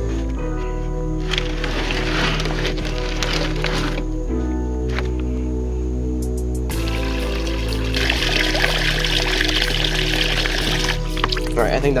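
Background music with low held notes that change every few seconds. From about two-thirds of the way in, water pours from a cooler's drain spigot into a plastic bucket for a few seconds.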